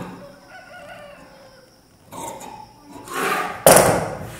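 Handling of cut cotton blouse cloth on a wooden table: scissors trim the cloth at the very start, then hands slide and smooth the fabric flat, in several brushing rustles with the loudest just before the end. A faint, wavering pitched call sounds in the background in the first two seconds.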